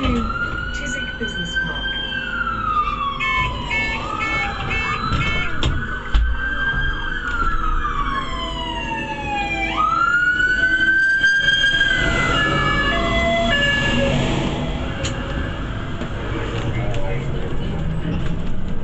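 An emergency vehicle's siren wailing, heard from inside a bus: three slow cycles, each rising quickly, holding, then sliding down over about four seconds. The wail dies away after about thirteen seconds, leaving the bus's steady engine rumble.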